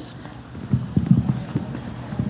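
Microphone handling noise: a quick, irregular run of low knocks and thumps lasting about a second, as the microphone changes hands for an audience question.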